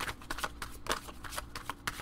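A deck of tarot cards being shuffled by hand: a quick, irregular run of light papery clicks.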